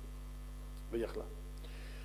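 Steady electrical mains hum in the microphone recording, holding at one level under a pause in the talk, with one short spoken word from a man about a second in.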